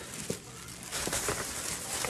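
Thin plastic grocery bag rustling and crinkling as it is handled and opened, growing louder and busier from about a second in.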